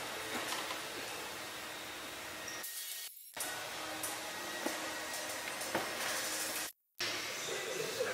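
Steady hissing background noise of a large gym room, with a few faint knocks. It cuts out briefly about three seconds in and drops to silence for a moment near the end, where one clip is spliced to the next.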